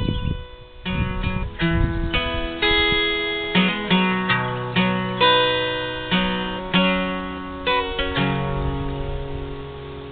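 Acoustic guitar playing the introduction of a song: chords about every half second to a second after a short break near the start, the last one, about eight seconds in, left ringing and fading.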